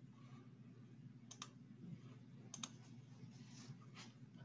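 Near silence with faint low room hum, broken by two brief pairs of faint clicks, about a third and two-thirds of the way in, from a computer being worked to change slides.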